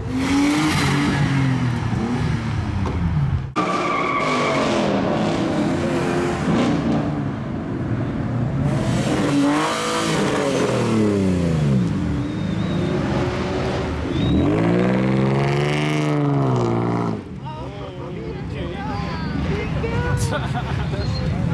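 Performance car engines revved hard again and again, their pitch sweeping up and down over a loud rushing noise. The sound changes abruptly about three and a half seconds in and again near the end.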